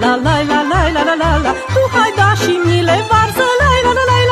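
Romanian folk band music: a lively violin melody full of quick ornamented turns, over a steady bass beat.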